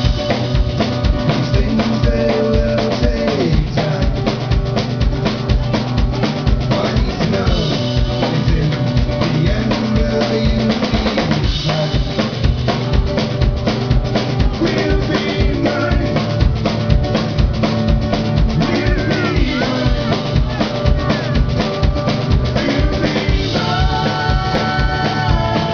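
Live rock band playing a song: a drum kit keeps a steady bass-drum beat with snare, under an amplified acoustic guitar.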